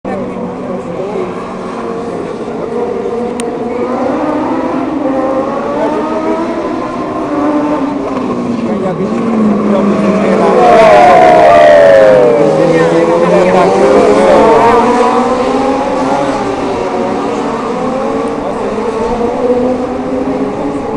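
Legends race cars' Yamaha motorcycle engines racing round a street circuit, several engines at once revving and changing pitch through gears and corners. It is loudest about halfway through, as a pack goes by with a falling pitch.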